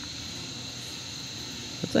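Steady chorus of night insects, a continuous high trill with no break, and a voice starting near the end.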